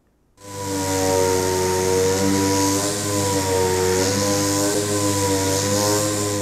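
Pneumatic (air) sander running steadily, sanding a skim coat of plastic body filler on a steel fender with 150-grit paper. It starts about half a second in and keeps a loud air hiss under a steady motor whine that wavers a little with the load.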